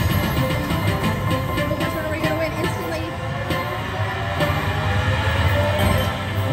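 Slot machine's bonus music and chimes playing as its instant-jackpot feature awards the Mini prize, over a steady low hum.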